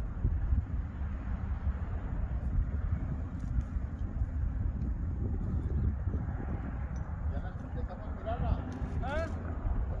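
Low, gusty rumble of wind buffeting the microphone outdoors. Near the end a voice calls out briefly.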